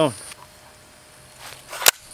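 Handling noise from the gun and its magazine: a short rustle, then one sharp click shortly before the end.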